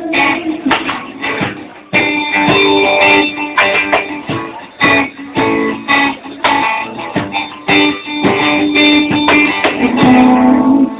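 Guitar strumming chords in an instrumental passage of a live band's song, with no singing. The playing thins out briefly about a second and a half in, then comes back louder.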